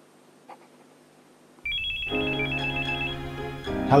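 A phone ringtone starts about a second and a half in, a quick high-pitched electronic melody, with music chords and bass coming in under it. Before it there is only faint room tone.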